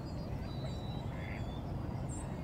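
A single short waterfowl call a little past halfway, over a steady low rumble.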